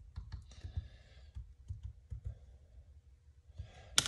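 Faint, irregular light taps and clicks of a small paintbrush dabbing black weathering paint onto the plastic and metal bits of a model control panel. The taps thin out in the second half.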